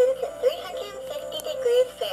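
Holly the recipe bear, a 2014 animated plush chef bear toy, singing a song with musical backing from its built-in speaker while it moves its head and mouth.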